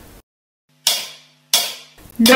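Two sharp percussive clicks about two-thirds of a second apart, each ringing off quickly: a two-beat count-in to the backing track, setting the tempo just before the melody starts.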